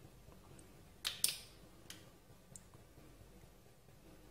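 Two sharp clicks about a second in, then a couple of faint ticks: pieces of crab claw shell being handled.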